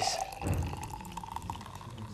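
Champagne being poured from a bottle into a glass, the liquid splashing, with a faint tone that rises slightly as it pours.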